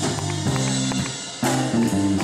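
Live band music carried by keyboards playing held chords, with sharp drum or cymbal hits about half a second and a second and a half in.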